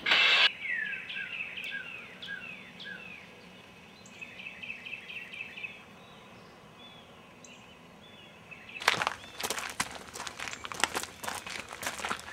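A short burst of noise at the very start, then songbirds: a run of quick descending whistled notes, then a fast series of repeated chirps. From about nine seconds in, footsteps crunching on dry leaves and gravel.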